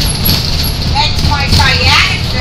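Low, steady rumble of a road vehicle running, with a person's voice over it in the second half.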